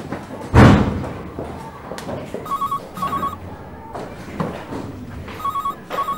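A telephone ringing with a trilling double ring, heard twice about three seconds apart, the first starting about two and a half seconds in. Before it, about half a second in, a single heavy thump is the loudest sound.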